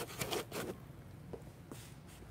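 Equipment being set into the foam cutouts of a hard carrying case: a brief rustle and scrape of parts against foam and plastic in the first moments, then a few faint clicks.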